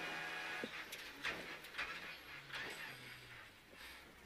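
Renault Clio Rally5 rally car's engine heard from inside the cabin, its note stepping down in pitch and fading as the car slows for a right hairpin, with a few sharp clicks in the first two seconds.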